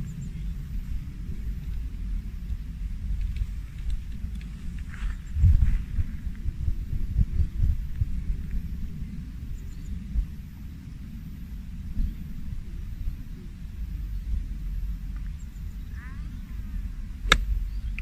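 Wind buffeting the microphone with a steady low rumble and gusts. Near the end comes a single sharp crack of a golf club striking the ball on a full swing.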